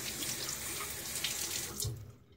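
Bathroom sink tap running, water splashing into the basin as the razor is rinsed mid-shave; the water shuts off near the end.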